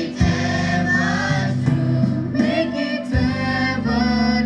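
Mixed choir of young women and men singing through stage microphones, sustained sung notes over a steady low accompaniment.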